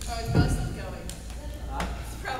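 People talking off-mic in a gym, with a single dull thud about half a second in and a short sharp knock near the end.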